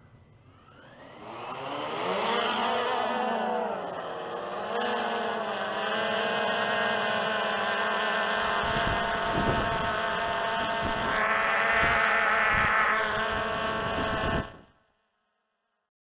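Multirotor drone's electric motors and propellers spinning up about a second in and running with a buzzing whine, the pitch rising and falling with the throttle and climbing again near the end. The sound then cuts off suddenly.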